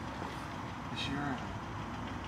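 Steady low vehicle engine rumble, with a brief faint voice about a second in.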